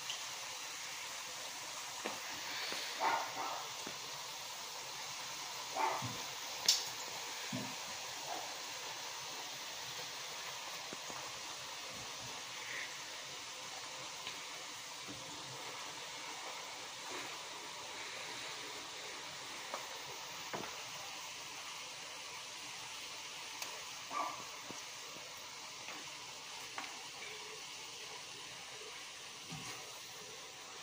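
Fry jack dough frying in hot oil in a skillet: a steady, quiet sizzle, with a few brief clinks and knocks of metal tongs against the pan.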